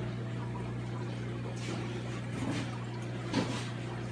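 Reef aquarium water circulating, a steady trickle and splash of moving water over a constant low hum.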